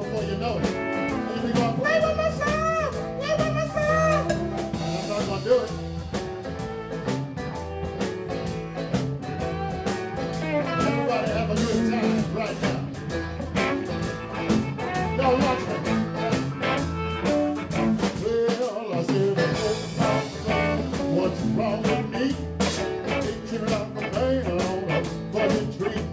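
Live blues band playing: a male singer over strummed acoustic guitar and electric guitar, with bass and a steady beat.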